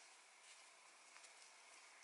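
Near silence: faint room hiss with a couple of faint ticks.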